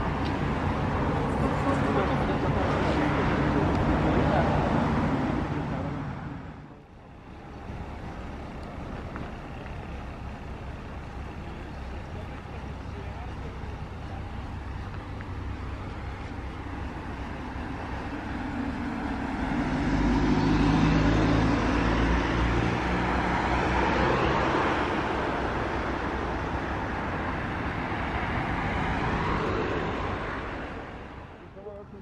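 Diesel engine of an Ikarus 280 articulated city bus running as the bus comes in to the stop. Later it rumbles louder as the bus pulls away and accelerates, about two-thirds of the way through.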